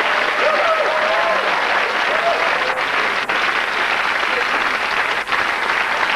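Studio audience applauding steadily, with a few voices audible over it in the first couple of seconds.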